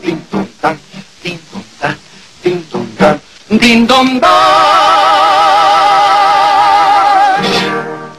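A comic song by two male singers with guitar: a few seconds of short clipped notes, then the voices hold one long final note with a wide vibrato, which stops near the end.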